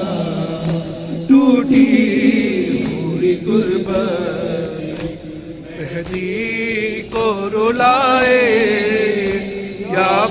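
A young man chanting a Shia noha (mourning lament) into a microphone, in long, wavering held notes that glide up and down.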